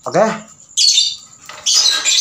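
Lovebirds held in the hand squawking twice, short, shrill, harsh calls just under a second apart.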